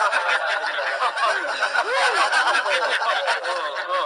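Laughter from several overlapping voices, dense and continuous, cutting off suddenly near the end.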